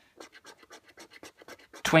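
A coin scratching the coating off a paper scratchcard in quick, short strokes, about seven a second.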